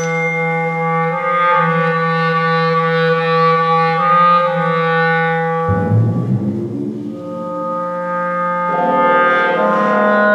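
Clarinet holding one long low note. About six seconds in, a low struck note rings out. The clarinet then comes back in with new sustained notes that change pitch near the end.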